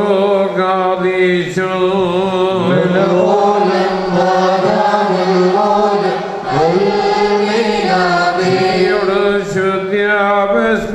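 Liturgical chant of the Holy Qurbana: a voice sings ornamented lines that bend up and down over a steady held drone note.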